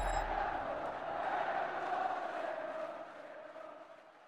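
Tail of a closing logo sting ringing out: one sustained sound, sinking slightly in pitch, that fades away over the last second.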